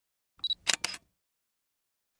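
Short intro sound effect: a brief high beep about half a second in, followed by a quick double click like a camera shutter.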